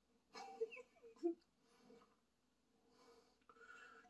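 Beer poured from an aluminium can into a glass: a few faint glugs in about the first second, then near silence.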